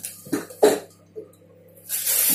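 A person coughing: two short coughs in quick succession about half a second in, with a smaller one a little later.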